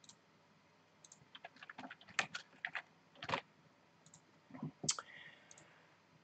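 Faint typing on a computer keyboard: irregular light key clicks, with a short pause about halfway through.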